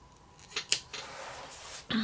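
Scissors cutting paper sticker sheets: a few sharp snips about half a second in, then a dry, steady rasp of the blades through the sheet that lasts about a second.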